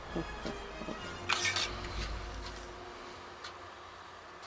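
A man's short laugh, then a brief sharp handling noise about a second and a half in, over faint background sound.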